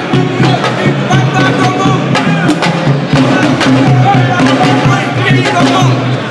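Hand drums beating a quick rhythm with voices chanting along, the music of a Baye Fall zikr.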